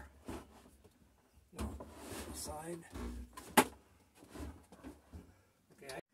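A microwave oven being pushed into a wooden cabinet opening: irregular bumps and knocks of its metal case against the framing, with one sharp knock about three and a half seconds in. Low voices murmur in between.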